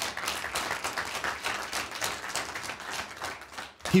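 Congregation applauding, many hands clapping together, dying away just before the end.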